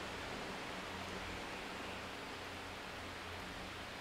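Steady low hiss of room tone, with no distinct sound.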